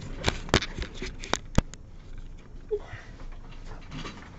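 Trading-card boxes and wrapping being handled: a quick run of sharp clicks and taps in the first two seconds, then quieter handling noise.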